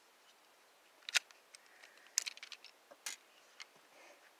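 Sharp metallic clicks from handling a Taurus G2C 9 mm pistol while loading a single round: three distinct clicks about a second apart, with fainter ticks between them.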